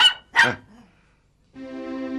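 A cocker spaniel gives short, sharp barks in the first half second. About a second and a half in, soft string music begins.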